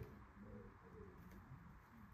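Near silence, with a bird cooing faintly in the background.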